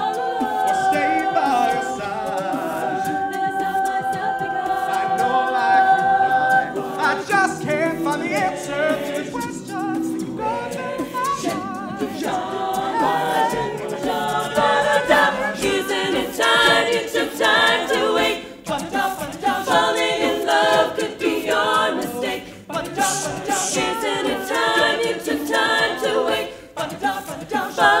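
Co-ed a cappella ensemble of mixed male and female voices singing without instruments: the group holds a sustained chord for the first several seconds, then moves into shifting harmony lines with a busier, rhythmic texture in the second half.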